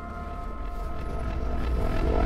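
Logo-intro sound effect: a low rumbling drone with a few held ringing tones, swelling steadily louder after the hit that came before.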